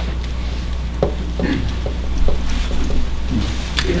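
A steady low electrical hum on the recording, with faint voices in the room and small handling rubs and clicks as items are passed around.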